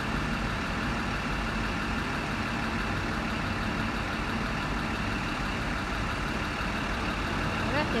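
Vintage diesel railmotor's engine running steadily at idle as it stands at the platform about to depart.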